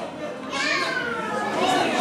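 Children's voices calling out and chattering in a large hall, a high call falling in pitch about half a second in.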